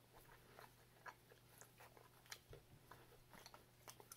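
Very faint chewing of a soft oatmeal muffin, with a few small clicks scattered through, over a steady low hum; otherwise near silence.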